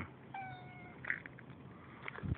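Domestic cat meowing once, a steady call about half a second long, followed by a brief, louder sound about a second in.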